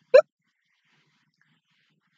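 A woman's laugh: the last short "ha" of a quick run of laughter, just after the start, then near silence.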